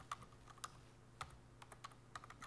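Faint typing on a computer keyboard: an uneven run of soft key clicks.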